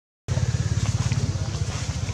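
A motor vehicle's engine running close by, a fast, even low throbbing. It comes in after a split-second dropout in the sound at the very start.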